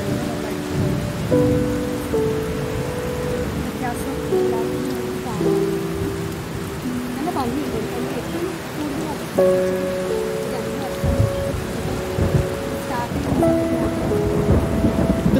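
Background music of slow sustained chords that shift to new notes every second or two, over wind buffeting the microphone with a rough rumble.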